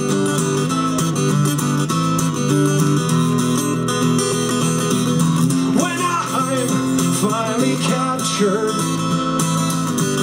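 Acoustic guitar strummed steadily in chords, played live through a PA, with a man's singing voice coming in over it a little after halfway.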